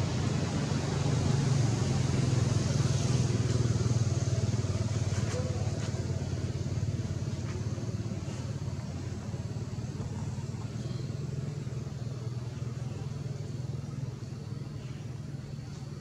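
Low, steady hum of a motor vehicle engine, growing a little louder in the first few seconds and then slowly fading.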